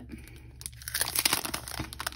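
Crinkling of a clear plastic sleeve around a planner sticker kit as it is handled and opened. It starts about half a second in and goes on as a dense, irregular crackle.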